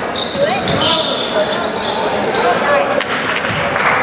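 A basketball bouncing on a hardwood gym floor during play, several sharp bounces over a steady din of voices from players and spectators.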